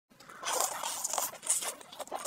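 Close-miked eating sounds of spice-glazed roast chicken being torn and bitten: a dense run of crackling and clicking that starts about half a second in.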